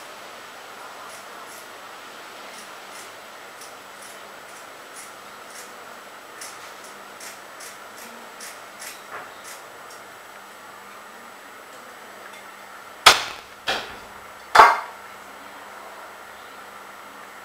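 A run of faint light clicks in the first half, then three sharp knocks close together near the end, the loudest sounds here, the last with a short ring.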